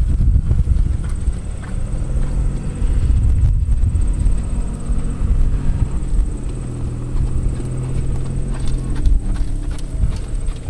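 Hoofbeats of a ridden horse cantering and then trotting on sand footing, over a steady low rumble.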